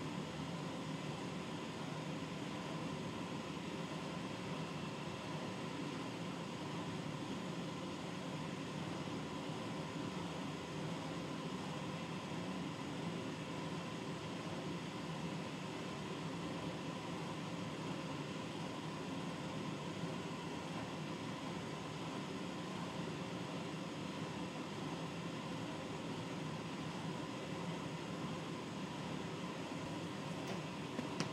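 Steady, even background hiss with a faint hum under it, unchanging throughout.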